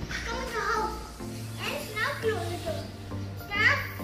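A young boy speaking, telling a story in a child's voice.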